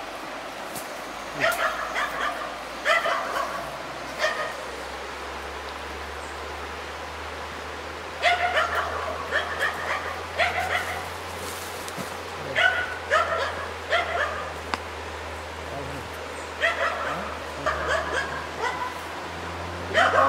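A trapped stray dog yelping and barking in runs of short, high calls, four runs a few seconds apart, over a steady low hum.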